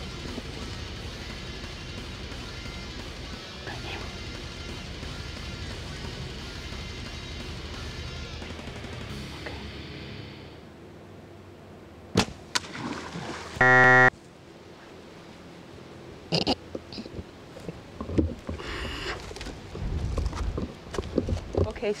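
Background music for about the first ten seconds, then the sharp snap of a compound bow being shot at an alligator (the shot misses), followed by a short, loud buzzing tone and a few scattered knocks.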